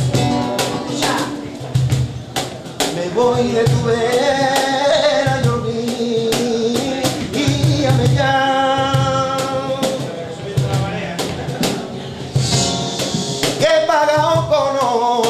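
A man singing flamenco in long, wavering held notes while accompanying himself on a nylon-string flamenco guitar, with sharp percussive strokes running through the music.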